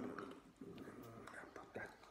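Faint whispered, half-voiced speech from a man mouthing words as he signs.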